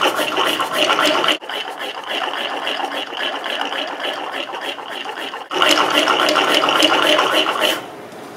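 Lung-powered reciprocating air engine running: breath pumping in and out of the soda-bottle cylinder while its styrofoam-ball piston, rod and wooden crank and wheels clatter rapidly. The rattle stops abruptly near the end.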